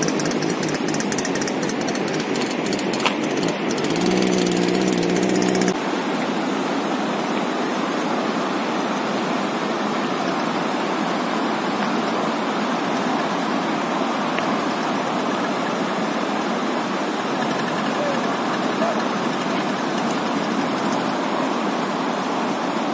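Steady rushing noise of a mountain stream running under a snow bridge, with a brief low hum about four seconds in.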